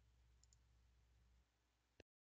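Near silence: faint room tone, with one brief sharp click at the very end.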